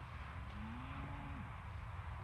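A cow mooing once: a single drawn-out low call that rises, holds for about a second and then drops away, over a steady low wind rumble.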